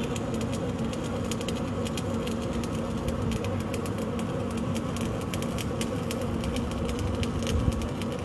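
Truck-mounted borewell drilling rig running: a steady engine drone with irregular, rapid clicking and rattling over it.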